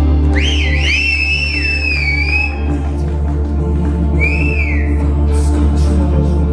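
Live instrumental music: a steady low drone and sustained chords under a high, sliding, whistle-like lead line. The lead holds one long bending note, then plays a short second phrase about four seconds in.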